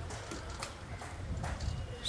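A pause between spoken phrases: faint steady background noise from the sound system, with a few soft, irregular taps.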